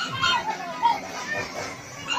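Young children's voices, chattering and calling out while they play.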